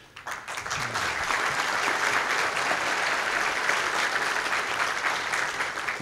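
Audience applauding, building up over the first second and then holding steady.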